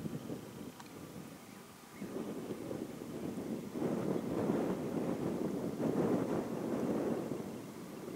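Wind gusting over a camcorder microphone fitted with a furry windjammer: a muffled rush that builds about two seconds in, holds, and eases near the end.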